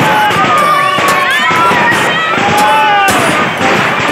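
Fireworks going off: ground fountain fireworks spraying sparks with a dense hiss and crackle, cut by several sharp bangs.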